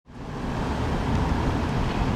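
Steady outdoor background noise, a low rumble with hiss above it, fading in at the start.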